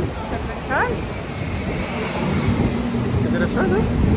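Strong wind buffeting the microphone with a constant low rumble, while a woman and a man laugh and squeal over it in short rising cries.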